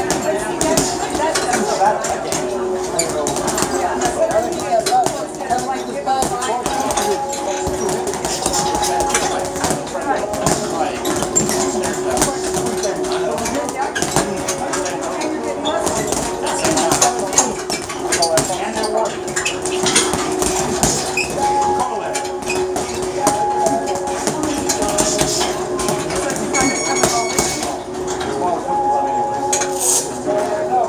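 Boxing gloves punching hanging heavy bags in an irregular run of thuds and slaps. People talk in the background.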